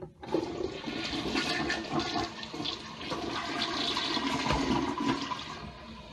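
Toilet flushing: a short click, then rushing water for about five seconds that drops to a quieter steady hiss near the end.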